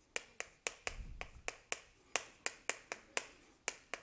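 Chalk writing on a chalkboard: a quick run of short, sharp taps and clicks, about four a second at uneven spacing, as each character is written stroke by stroke.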